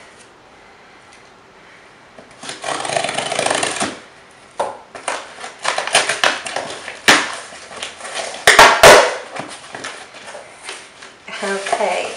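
A cardboard shipping box being opened by hand: a stretch of tearing and scraping, then irregular rustling and crinkling of the box and its packing, with a few sharp snaps about seven and nine seconds in.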